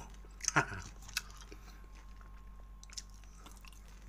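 A person chewing a mouthful of food, with a short louder mouth sound about half a second in and a sharp click just after.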